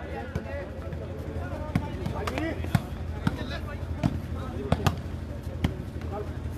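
A volleyball being struck by hands during a rally, about eight sharp slaps at irregular intervals, with faint voices of players and spectators underneath and a steady low hum.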